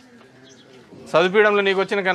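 A short lull, then a man's voice speaking loudly from about a second in, in drawn-out, even-pitched phrases.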